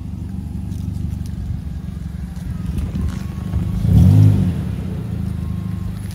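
Mazda3 sedan's engine idling steadily, with one brief rev that rises and falls about four seconds in.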